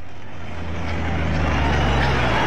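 A heavy vehicle's engine runs with a steady low hum, and its rushing noise swells over the first second and a half.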